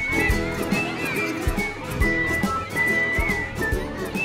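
Background music with a steady beat of about two strokes a second and a high, held melody line.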